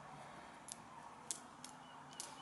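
Three faint clicks of copper 1p coins knocking together as they are picked out of a pile on a towel by hand, the middle one the loudest, over low room tone.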